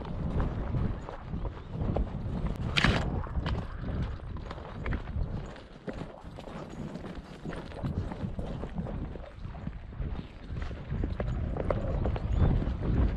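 Quick, irregular footfalls on dry, stony ground as the camera is carried fast through scrub. Twigs and brush scrape past, with one sharp scrape about three seconds in, over a low wind-like rumble.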